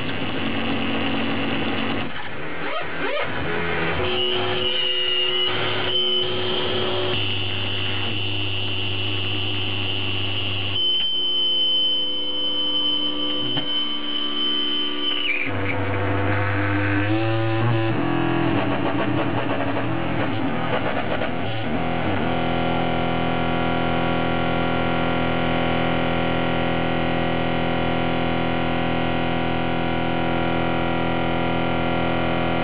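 Experimental electronic noise music played live: layered sustained drones and steady tones that shift abruptly. A high steady tone is held through the middle, and from about two-thirds of the way in a dense, many-layered drone sets in.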